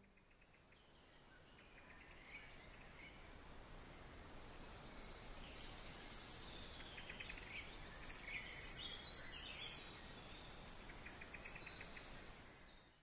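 Faint outdoor nature ambience fading in over the first few seconds: a steady hiss with scattered bird chirps and a few short, rapid trills.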